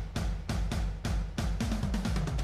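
Pop musical-theatre song in a drum break: a drum kit plays a fast fill of kick and snare hits, about six or seven a second, over a bass line, with no singing.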